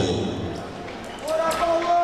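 Speech in a large hall: a voice fades into the room's background noise. A little past halfway, a higher voice starts a drawn-out announcement, the ring announcer calling the bout.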